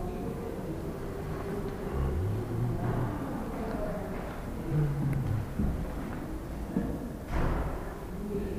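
Indistinct low voices of people in the background over steady room noise, with a short burst of noise near the end.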